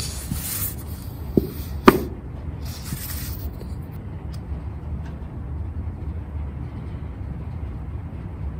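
Hands squeezing and working a small plastic glue bottle whose glue is slow to come out, with two short hisses and a couple of sharp clicks from the bottle near the start.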